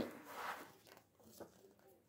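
Faint rustling and sliding of a paperback picture book's pages as it is lifted off the table, with a small tap about one and a half seconds in.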